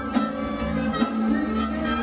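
Live band playing a steady beat: drums ticking along under held chords and a sustained bass line.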